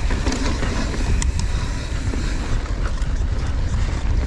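Mountain bike riding fast down a rough trail: heavy wind noise on the microphone, with the bike rattling and a few sharp knocks, the clearest about a second in.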